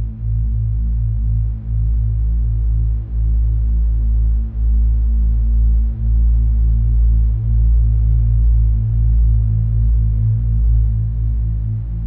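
Deep, steady droning tone used as the meditation's focus 'vibration': a low hum whose level dips briefly and evenly about every second and a half, giving it a slow pulse.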